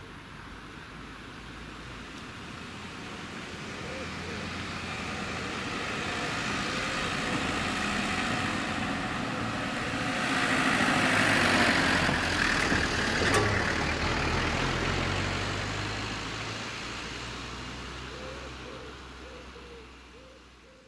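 A car and a van driving past slowly on a tarmac road, engine and tyre noise growing as they approach, loudest about ten to thirteen seconds in, then fading away.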